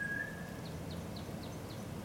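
A small bird calling faintly outdoors: a quick run of about seven short, falling, high chirps over steady background noise. A held high note from the music fades out at the start.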